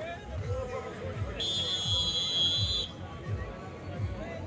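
Referee's whistle blown once, a shrill steady blast of about a second and a half near the middle, over crowd babble.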